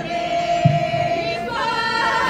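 Ahwash chant: a voice holds one long note, joined by a single low frame-drum beat about two-thirds of a second in, and from about a second and a half several voices come in together as a chorus.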